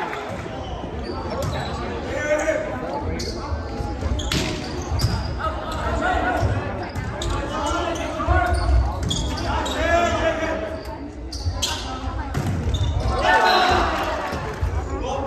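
Volleyball rally in a gym: the ball is struck and bounces on the hard floor as a handful of sharp knocks, with players and spectators calling out throughout. The sounds echo around the large hall.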